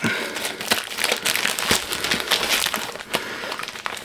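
A parcel crammed full of shirts being pulled open by hand, its packaging crinkling and rustling in irregular crackles.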